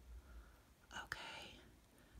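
Near silence, broken about a second in by a softly whispered "okay".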